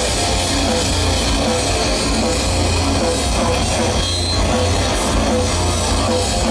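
Rock band playing live, loud and steady: electric guitars over bass and a drum kit in an instrumental passage without vocals.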